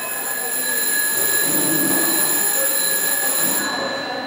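A steady, high-pitched electronic telephone-like tone from the telephone-sheep sculptures, held for about three and a half seconds before it cuts off suddenly near the end.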